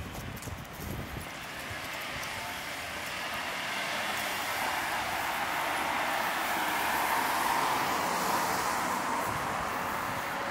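A car passing on the street: tyre and road noise swells over several seconds, is loudest about seven to eight seconds in, then eases off. A few low thumps of wind on the microphone come in the first second.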